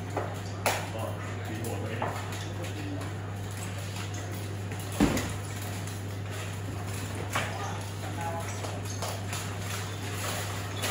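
A few scattered knocks and clanks from armoured fighters moving and handling rattan weapons and shields, the loudest about halfway through, over a steady low hum.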